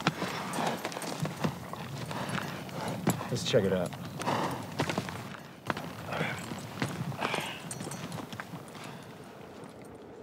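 Horses' hooves clopping on rocky ground, a run of uneven knocks that grows fainter near the end.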